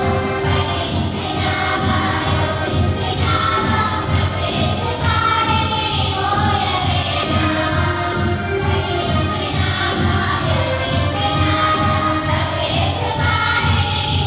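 A group of young women singing a Christian song together, accompanied by an electronic keyboard and electronic drums keeping a steady, quick beat.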